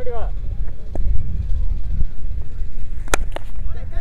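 A cricket bat striking the ball once, a single sharp crack about three seconds in, over a steady low rumble of wind on the microphone.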